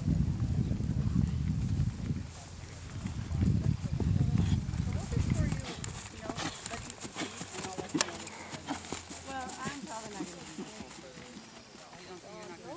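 A horse trotting on dry, hard ground, its hoofbeats sharp and close in the second half as it passes by. Low rumbling bursts fill the first half.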